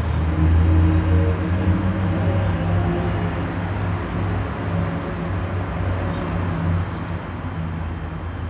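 Music fades out in the first second or two, leaving a steady low outdoor rumble with a faint haze of noise above it.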